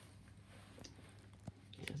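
Faint handling noise from a solar wall light held in the hands: a couple of light clicks from its casing, with a low room hum underneath.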